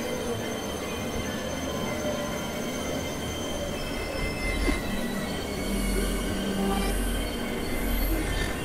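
Experimental industrial noise drone: a dense hiss with many steady high-pitched tones held over it, squealing like grinding metal, and a low hum that swells in about halfway through.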